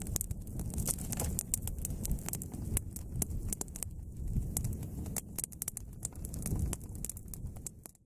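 Open campfire of dry twigs and branches burning, with many sharp, irregular crackles and pops over a steady low rumble.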